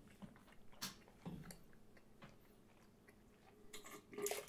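Near silence with a few faint, wet mouth clicks and smacks from red wine being held and worked around the mouth while tasting.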